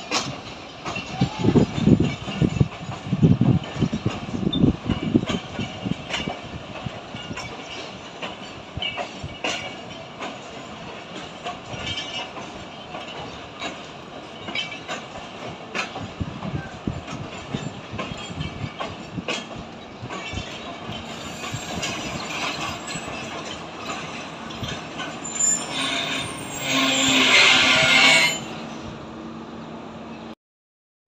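Passenger coaches rolling past on the track, the wheels knocking and clicking over rail joints. There are heavy low thuds in the first few seconds, then a loud high wheel squeal near the end.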